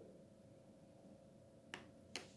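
Near silence with a faint steady hum, broken near the end by one sharp click of a plastic syringe being handled in a plastic measuring cup.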